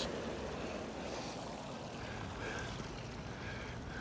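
Steady outdoor background rush, an even noise with no distinct events, with faint far-off sounds, perhaps voices, coming and going over it.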